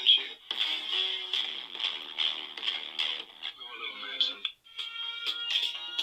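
A song with vocals and a steady beat plays through a smartphone's small speaker, thin and without bass. About four and a half seconds in it cuts off for a moment, and another song with held sung notes starts.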